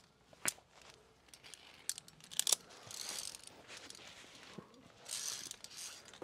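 A few faint, scattered clicks and metallic clinks of via ferrata gear, carabiners and karabiner-clad lanyards against the steel safety cable, with soft rustling in between.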